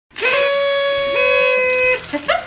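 Two party noisemaker horns being blown, each a steady buzzy toot: one starts right away, and a second, slightly lower one joins about a second in, so for a moment they sound together.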